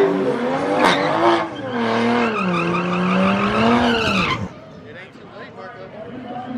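Dodge Charger launching from the drag-strip starting line and accelerating away. The engine note dips in pitch, holds low, then climbs again, and the sound drops away sharply about four and a half seconds in.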